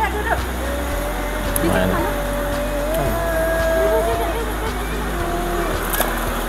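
Shallow rocky river running steadily over stones, with faint voices over the sound of the water.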